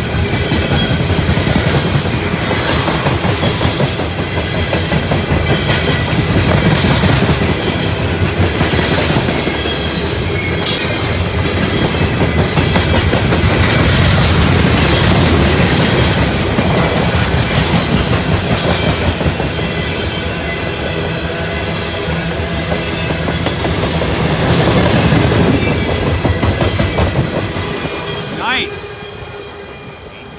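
Loaded coal train cars rolling past a grade crossing: a loud, steady rumble and clatter of steel wheels on the rails. The sound fades near the end as the last cars go by.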